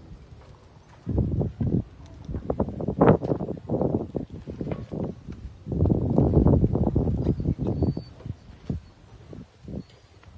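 A wooden oar slapping and churning the water surface in irregular bursts of quick strokes, about a second in, around three to four seconds, and longest from about six to eight seconds.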